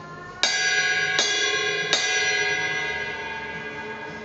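Bell of a Sabian 17-inch thin crash cymbal struck three times with a drumstick, about three-quarters of a second apart, each strike leaving a smooth, clear ring of many tones that overlap and fade slowly.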